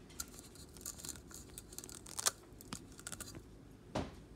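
Close handling noise: jacket fabric rustling and irregular clicks and scrapes as the camera is touched and adjusted, the loudest click about two and a quarter seconds in.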